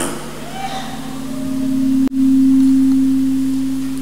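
A sustained low tone that swells over the first two seconds. It breaks off for an instant about halfway through, then comes back louder and slowly fades.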